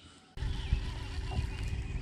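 Wind buffeting the microphone: a low rumble that starts suddenly about a third of a second in, with a faint steady hum beneath it.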